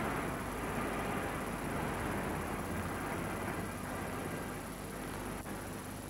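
Street traffic noise: a steady, even hum of passing vehicles with no single event standing out.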